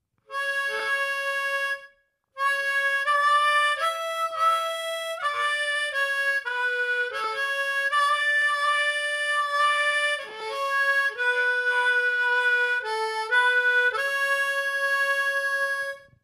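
Harmonica (blues harp) played through a TC-Helicon Play Electric processor: a melody of held, changing notes, with a brief break about two seconds in.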